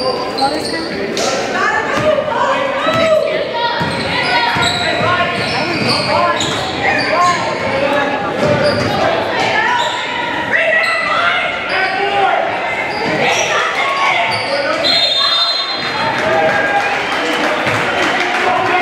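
A basketball bouncing on a hardwood gym floor amid many overlapping voices of players and spectators, all echoing in a large gym. A brief high steady tone sounds about fifteen seconds in.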